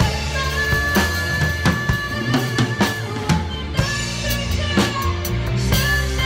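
Acoustic drum kit played along to a backing track: snare, bass drum and cymbal strikes over sustained pitched music. The deep bass drops away for about a second and a half in the middle, then returns.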